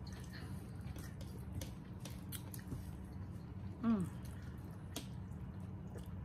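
Wet, clicking mouth sounds of people chewing and slurping noodles close to the microphone, with a short "mm" about four seconds in.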